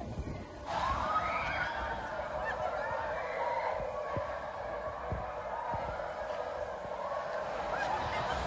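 Faint, distant shrieks and squeals from riders on a swinging pirate-ship ride, over a steady outdoor hiss, starting just under a second in.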